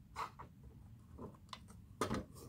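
Faint, scattered light clicks and taps of small plastic toy pieces being handled in a miniature plastic toy oven.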